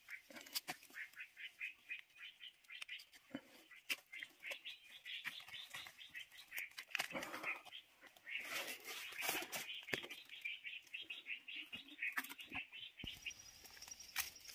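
Faint, rapid chirps from a small bird, repeated several times a second, with a few soft snaps and rustles as shiitake mushrooms are broken off a log by hand.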